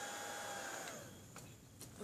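Small fan-type nail-polish dryer running with a steady whine that winds down and stops about a second in, followed by a couple of faint clicks.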